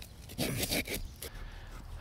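Handsaw sawing into a thick tree root from its underside, a few irregular scraping strokes. A short laugh about a second in.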